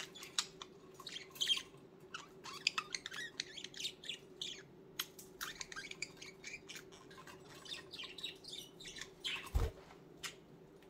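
Pet budgies (budgerigars) chirping and chattering in a rapid, uneven run of short chirps. A single dull thump comes near the end.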